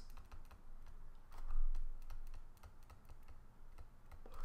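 Stylus tapping and scratching on a drawing tablet while handwriting, a quiet, irregular run of small clicks.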